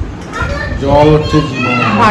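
A young child's voice making high-pitched, wordless sounds that rise and fall in pitch.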